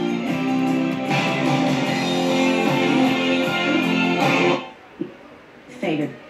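Guitar music from an FM station playing through a Sony ST-333S tuner; it cuts off suddenly about four and a half seconds in as the dial is turned off the station, leaving low noise and a brief snatch of sound near the end.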